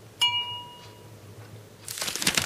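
A single light ringing ding, a brush striking a hard object as it is put away, fading within about a second. A rustle follows near the end.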